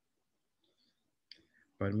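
Near silence, then a short click about a second and a half in, just before a man starts speaking.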